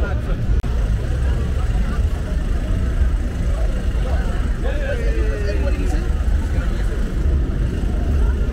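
Street traffic on a wet road, a steady low rumble with tyre noise, under the voices of passers-by talking; one voice stands out about halfway through.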